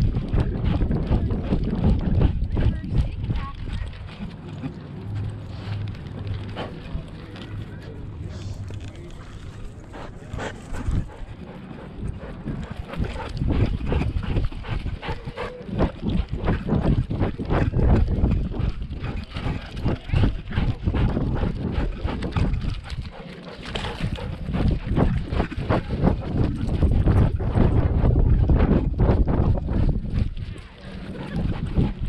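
Husky moving about with an action camera strapped to her back: a quick, continuous run of footfall knocks and harness jostling right on the microphone, over a low rumble.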